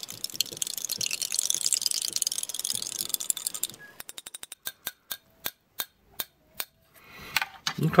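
Plastic MRE spoon stirring a drink in a glass: quick scraping and clinking against the glass for the first four seconds, then a string of sharp separate clicks, fast at first and then slower.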